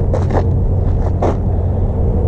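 An engine idling steadily under a low rumble, with brief rustling noises about a quarter second in and again just after a second.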